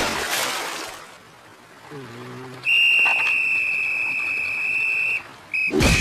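Cartoon sound effects: a noisy wash that fades out in the first second, a short low vocal grunt, then a long steady high-pitched whistle for about two and a half seconds, and a sudden crash near the end.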